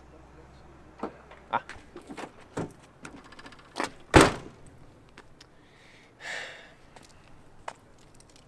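A car's central locking worked by its remote key: a few light clicks, a short buzzing rattle of the lock actuators about three seconds in, then a single loud thunk a second later, the loudest sound here.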